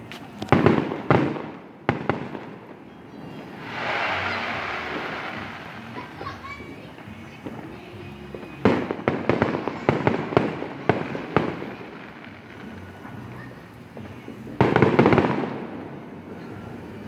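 Consumer fireworks going off: a cluster of sharp bangs at the start, a hissing rush about four seconds in, then a long run of rapid cracks and pops from about nine to eleven seconds, and another dense burst of cracks near the end.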